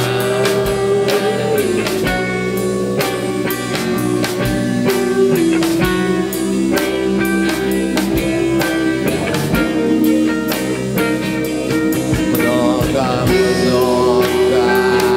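Rock band playing: electric guitars with held, bending notes over a steady drum-kit beat, with no words sung.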